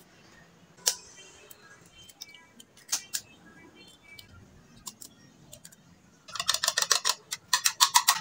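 A fork beating eggs in a bowl: a few scattered taps at first, then, from about six seconds in, a fast, continuous run of clicks as the fork strikes the bowl.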